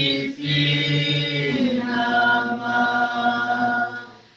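Voices singing a hymn in long held notes, with a short break between phrases just after the start.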